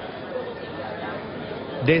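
Indistinct chatter of many people talking at a café terrace, a steady murmur of overlapping voices that grows slightly louder.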